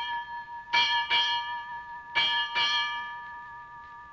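Ship's bell struck in quick pairs, two pairs here, each stroke leaving a clear ringing tone that fades slowly, as in ship's-bell time.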